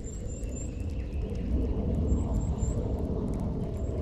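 Irregular low rumble of wind buffeting the camera microphone outdoors, growing louder about a second and a half in, with a few faint, short, high chirps in groups of two or three.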